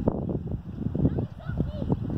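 Distant, indistinct shouting from football players on the pitch, over a fluctuating rumble of wind on the microphone.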